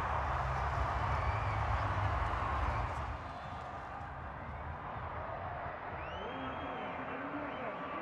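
Stadium crowd noise following a try: a steady din of many voices, louder over a low rumble for the first three seconds, then settling lower. A faint single voice rises and falls near the end.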